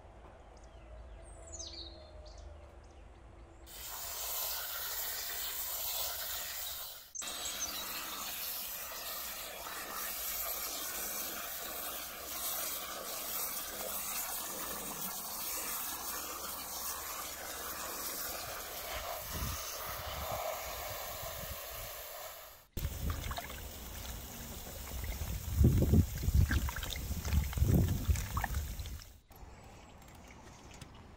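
Water spraying from a hose onto chanterelle mushrooms in a plastic colander in an enamel basin while a hand turns them over. The splashing gets louder and more uneven over the last few seconds. A short bird chirp sounds in the quiet before the water starts.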